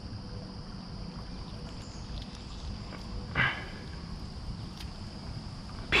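Small rocky creek running steadily at the water's edge, a low even rush of flowing water, with a brief human vocal sound about three and a half seconds in.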